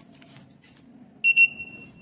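Piezo buzzer on an ESP32 RFID breadboard circuit giving one high-pitched electronic beep about a second in, loud at first and then holding on more faintly. It sounds as a product's RFID tag is read and the item is flagged as expired.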